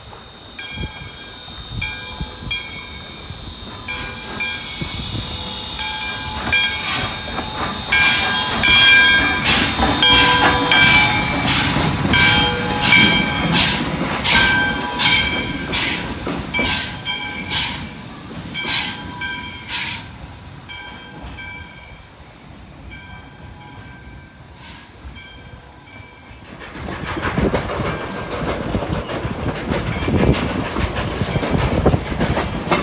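Nevada Northern Railway No. 93, a 2-8-0 Consolidation steam locomotive, runs past slowly with a regular rhythm of ringing clicks from its wheels on the rails. The clicks grow loudest about a third of the way in and die away after about twenty seconds. Near the end the train is heard from on board as a steady rushing ride noise.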